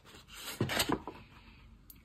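A folded paper plate being opened out by hand, giving short papery rustling and rubbing in the first second, then fainter handling and a light tick near the end.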